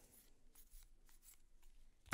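Near silence with faint sliding and soft flicks of Magic: The Gathering cards being shuffled through by hand.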